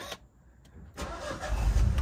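A 2016 Mini One's three-cylinder petrol engine being started: after a near-quiet second the starter turns it over and it catches about a second and a half in, running with a loud low rumble.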